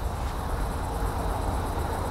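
Steady outdoor background noise: a low, uneven rumble under a faint even hiss, with no distinct event.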